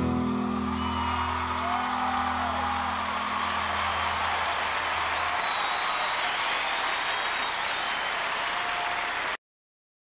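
Arena audience applauding and cheering over a band's final held chord. The chord fades out about halfway through, the applause carries on, and everything cuts off abruptly near the end.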